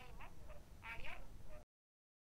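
Faint, distant voices over a low room rumble, cut off suddenly into silence shortly before the end.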